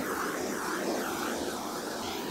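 Handheld gas torch burning with a steady hiss as its flame is played over steel cake rings, warming them so they release from the frozen cake.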